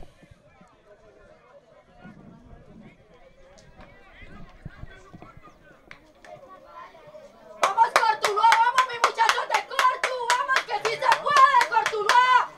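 Faint distant voices, then, about seven and a half seconds in, rhythmic hand clapping, about four claps a second, with a voice chanting along over it, cheering the team on.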